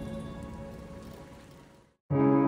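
Background music with sustained tones over a hissy wash, fading out steadily to silence just before the end.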